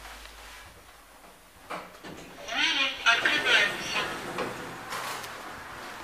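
An indistinct voice speaks in short phrases inside a small elevator cab, after a quiet start and a single sharp click a little under two seconds in.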